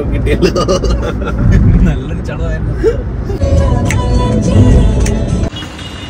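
Low road and engine rumble of a moving car heard from inside the cabin, under laughing voices and music; the rumble stops abruptly near the end.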